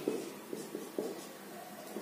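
Marker pen writing on a board: a few faint short scratches and taps of the pen strokes.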